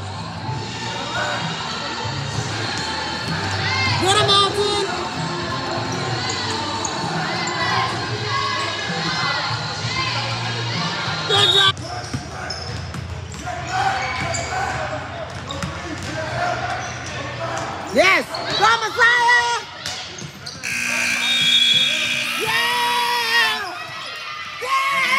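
A basketball dribbled and bouncing on a hardwood gym court during a youth game, amid players' and spectators' shouts and talk.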